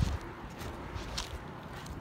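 Muffled rustling and scattered low thumps of handling noise on a covered phone microphone, with one brief, sharper scrape a little past the middle.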